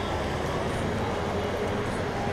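Steady outdoor background noise: a low rumble with faint, distant voices of people on foot.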